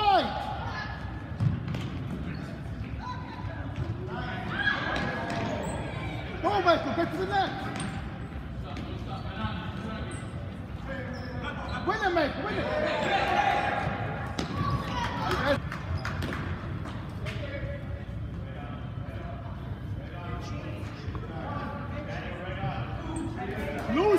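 Ball kicks and bounces on a gymnasium floor, sharp knocks ringing in a large hall, among shouts and calls from players and spectators, which come loudest in two spells in the middle.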